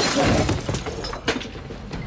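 A man knocked backwards by a punch, crashing into furniture: a loud crash of breaking that dies away over about a second, followed by a few scattered clatters.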